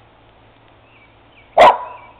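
A dog barks once, loud and sharp, about one and a half seconds in, with faint bird chirps behind.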